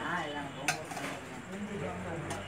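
Steel serving bowl and plates clinking once, sharply, a little under a second in, as food is dished out, with voices around.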